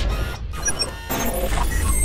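Logo-intro sound effects: electronic whooshing sweeps and short high glittery blips over a steady deep bass.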